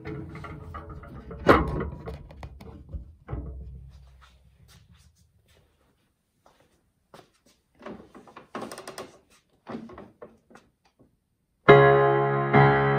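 Handling noise of a camera being set in place: rubbing and knocks, with one loud thunk about a second and a half in, then scattered small clicks and shuffling. Near the end a Roland digital piano comes in loudly, a chord played hands together.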